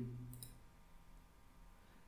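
Near silence with a couple of faint computer clicks about a third of a second in: a link being ctrl-clicked to open it.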